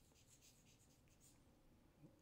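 Very faint scratching of chalk on a chalkboard as a word is written in quick strokes, dying away in the second half.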